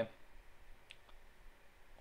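A faint, short click about a second in over quiet room tone.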